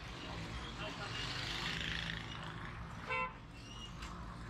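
Street traffic noise with a single short vehicle horn toot a little after three seconds in, the loudest sound, over the steady run of passing engines.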